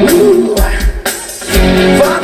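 Live rock band playing on a stage: electric guitars, bass and drums. The music dips briefly a little after a second in, then comes back in full.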